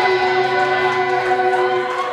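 Live rock band holding a sustained chord at the end of a song, electric guitar and other instruments ringing on steady notes.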